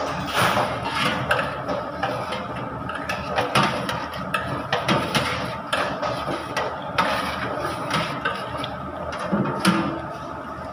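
Kitchen clatter: irregular sharp knocks and clicks, about one or two a second, over a steady background noise.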